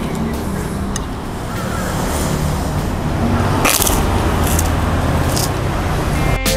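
Road traffic passing outside: a steady low engine and tyre rumble that slowly swells through the middle.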